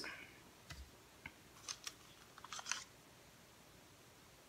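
A few faint light clicks and taps of paint cups being handled and set down on the worktable, with a small cluster of clicks a little before the end.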